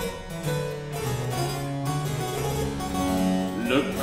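Baroque chamber ensemble playing an instrumental interlude: harpsichord continuo over a bass line moving in steady steps. The singer comes back in with a sung note near the end.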